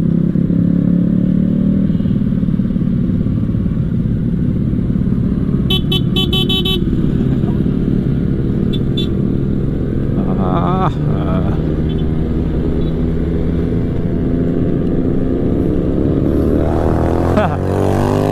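Small sport motorcycle's engine running under the rider as it pulls away in traffic and accelerates through the low gears, its pitch rising with the revs, with wind noise over it. A short burst of rapid toots, like a horn, about six seconds in.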